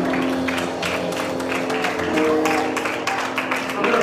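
Live church music with held keyboard chords, over hand clapping.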